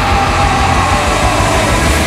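Loud heavy-metal band music in a sustained passage: a dense, held low end with a single high tone gliding slowly downward in pitch.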